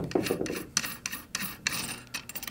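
Steel barrel retaining nut of a Czech Sa vz. 26 submachine gun being unscrewed by hand, metal rubbing on metal along the threads, with a quick irregular run of small scrapes and ticks.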